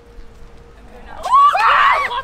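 A woman screaming in fright. It breaks out suddenly a little over a second in and stays loud to the end, with a high, wavering pitch: a startled shriek.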